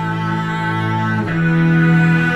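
String quartet music: slow, sustained bowed strings in a low register, holding long notes. The lower notes shift to a new chord a little past halfway through.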